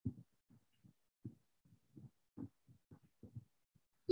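Near silence with a few faint, soft, low thumps at irregular intervals.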